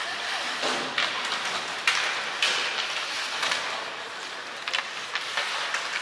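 Ice hockey play: skate blades scraping and carving on the ice, with sharp clacks of sticks on the puck and ice, the loudest about two seconds in and a quick run of clicks near the end.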